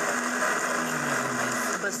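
A small electric blender running steadily, its motor pitch sagging slightly partway through, then stopping near the end.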